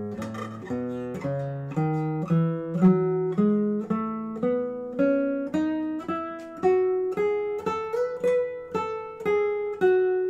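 Milagro R1 concert classical guitar with a cedar top, played as a scale of single plucked notes climbing steadily in pitch, about two to three notes a second, each note ringing with rich overtones.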